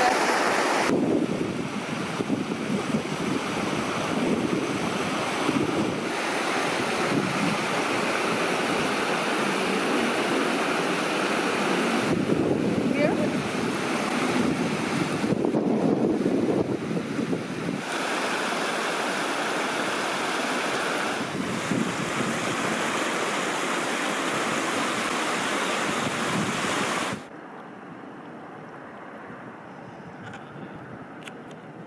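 Strong wind buffeting the microphone, mixed with a rocky mountain stream rushing over stones. The noise shifts at several cuts and drops to a much quieter background near the end.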